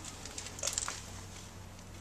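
Handling noise: a brief flurry of light clicks and rattles about half a second in, over a faint steady low hum.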